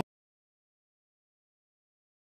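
Complete silence: the sound track drops out entirely, with no room tone.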